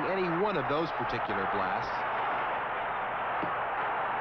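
A man talking briefly for the first two seconds over a steady background noise, which carries on alone after the talking stops.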